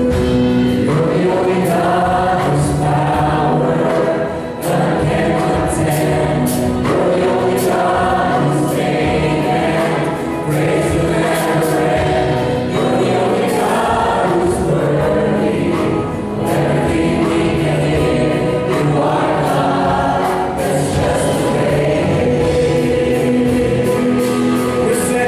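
Live gospel praise music: a choir and lead singers on microphones singing over a band of drum kit, bass and electric guitar, with a steady drum beat.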